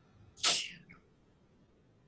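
A single short, sharp burst of breath noise from a person, about half a second in.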